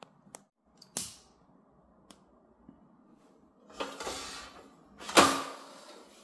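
Clicks and metal scraping from handling the base of a canister-fuelled indoor heater stove: a few sharp clicks, then two longer scraping slides about four and five seconds in, the second the loudest.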